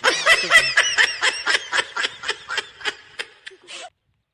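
A person laughing in a rapid run of short bursts, about four a second, slowing and fading away near the end.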